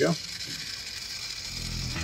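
Electric rotisserie motor running steadily as it turns the spit, a faint even whir. Music with low bass notes fades in near the end.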